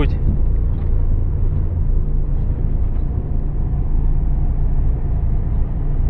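Steady low drone of a lorry's engine and tyre noise at motorway speed, heard from inside the cab.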